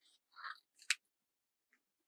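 Scissors cutting through a strip of craft paper: a few short cuts ending in one sharp snip about a second in.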